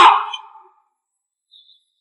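A man's voice calling out "Son!" that fades away about half a second in, followed by near silence.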